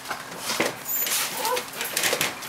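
Pomeranian puppy whimpering: two short, high whines, about half a second and a second and a half in, over light rustling.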